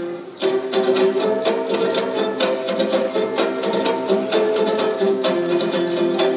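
Three Kazakh dombras played together in a fast, evenly strummed folk tune. There is a brief break right at the start, then the playing resumes.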